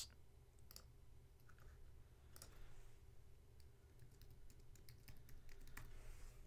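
Faint computer keyboard typing and mouse clicks: scattered light clicks over a low steady room hum.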